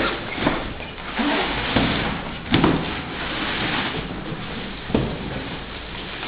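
A large cardboard box being lifted and slid off a boxed table, making scraping and rustling cardboard and plastic-wrap handling noise with a few knocks, the loudest about halfway through.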